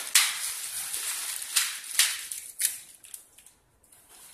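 Clear plastic packaging bags crinkling and rustling as the server's bagged rack-mount slide rails are pulled out and handled, with several sharp crackles in the first three seconds, then quieter near the end.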